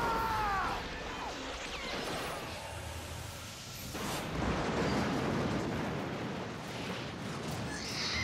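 Cartoon action sound: a man's held scream trailing off at the start over gunfire, then an explosion about four seconds in, with a long low tail.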